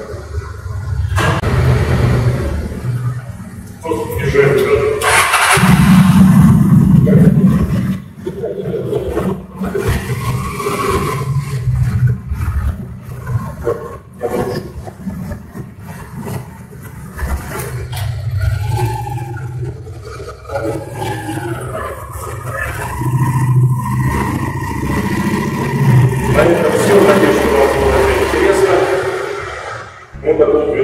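Honda Steed V-twin motorcycle engine running on freshly changed spark plugs, louder for a few seconds about five seconds in, with a man's voice at times.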